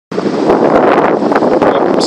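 Loud, steady wind buffeting a handheld camera's microphone.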